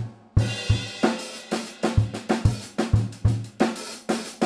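Acoustic drum kit playing a funk groove: bass drum, snare and hi-hat strokes locked together in a steady rhythm. There is a brief break just after the start, and the groove comes back in with a loud hit.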